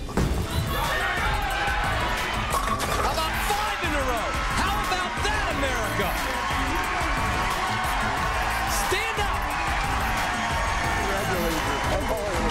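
Tenpin bowling ball crashing into the pins for a strike a couple of seconds in, followed by a crowd cheering and shouting.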